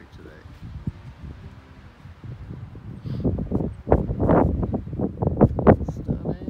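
Wind gusting across the microphone in uneven low rumbles, quieter at first and strongest in the second half.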